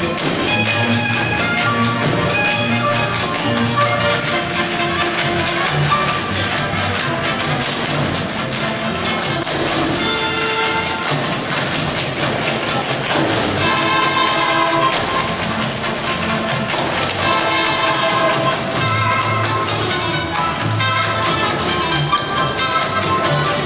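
Tap shoes of a line of dancers striking the stage floor in quick, dense rhythms, over music with a clear melody.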